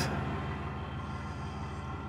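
Portable generator running steadily in the background, a constant low hum with no change through the pause.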